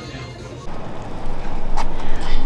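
Faint background music, then about half a second in the sound cuts to a louder rushing, rumbling outdoor noise, typical of wind buffeting a phone microphone, which swells towards the end.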